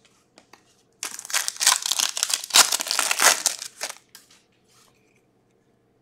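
Foil wrapper of a Skybox Metal Universe hockey card pack being torn open and crinkled, starting about a second in and lasting about three seconds.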